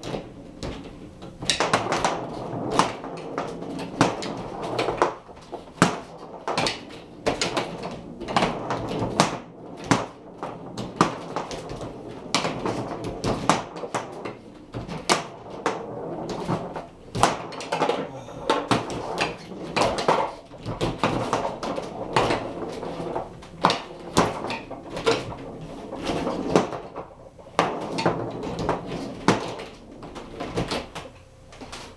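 Foosball table in play: a rapid, irregular run of sharp clacks and knocks as the ball is struck by the players' figures and the rods are slid and spun.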